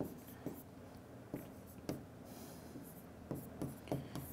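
Faint taps and scratches of a stylus writing on an interactive display screen: scattered soft ticks, with a short high scratch a little past the middle.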